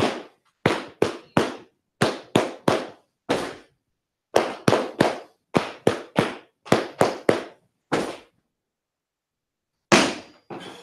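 A roomful of men clapping in unison in sharp groups of three: three sets of three followed by a single clap, the whole sequence given twice with a short pause between. These are the Masonic grand honors.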